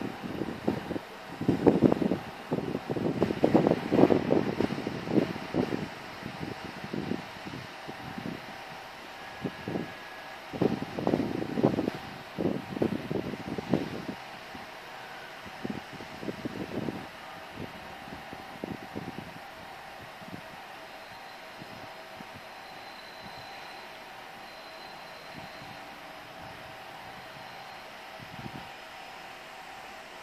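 Wind buffeting the microphone in irregular gusts, strongest in the first half and easing later, over a faint steady hum from a diesel railbus drawing away into the distance.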